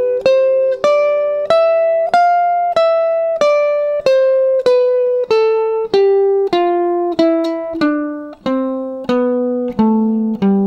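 A C major scale in the position starting on D (shape 2), played one picked note at a time on an archtop guitar. The notes are evenly spaced, about one and a half a second, climbing for about three seconds and then descending.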